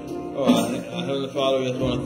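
Gospel music with a voice singing or chanting over it, the pitch sliding and breaking between notes.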